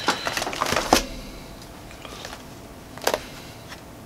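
Pages of a ring-binder stamp album being flipped by hand: a burst of rustling and flapping paper and plastic sheets for about the first second, then quieter handling with one sharp tap about three seconds in.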